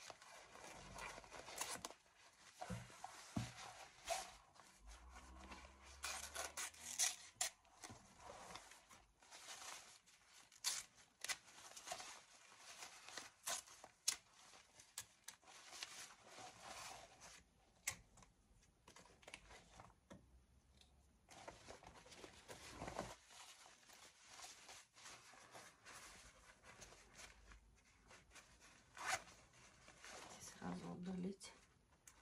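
Scissors cutting through a handbag's seams and satin lining, mixed with the rustle and crinkle of the synthetic lining fabric as it is handled and pulled. Irregular short snips and crackles come and go.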